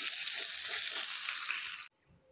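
Diced potatoes frying in hot oil in a steel kadhai: a steady sizzle, with a slotted steel spatula stirring and scraping through them. The sound cuts off suddenly near the end.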